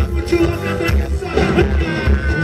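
Live band music through a stage PA: a steady heavy bass beat with hand-drum and drum-kit percussion under a singer's voice.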